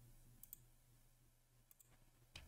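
Near silence with a few faint computer mouse clicks: two close together about half a second in and two more near the end, over a faint steady hum.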